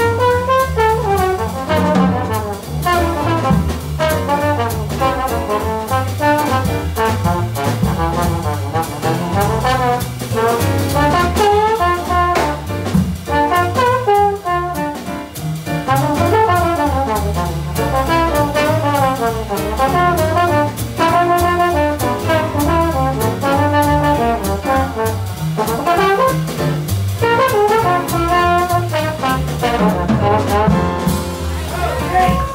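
Trombone playing a jazz solo of quick, running lines, backed by an upright bass stepping from note to note, keyboard chords and drums.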